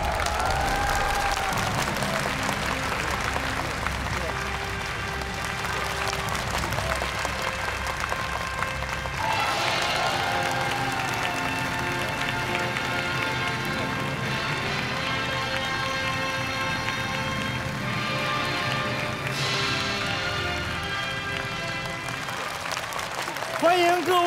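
Studio audience applauding over entrance music, with a couple of shouted calls about a second in and again around ten seconds.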